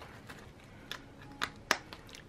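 Handling sounds of a holographic plastic binder being picked up and set aside on a wooden table: three short, sharp clicks in the second half, the last and loudest near the end.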